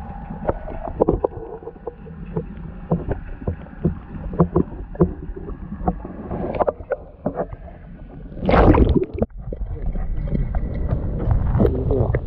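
Muffled sound from a camera held under water: a steady low hum with many small clicks and knocks, and a loud rush of water about eight and a half seconds in.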